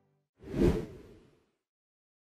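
Whoosh sound effect for a logo transition: a single swoosh that starts about half a second in, swells quickly and fades away within about a second.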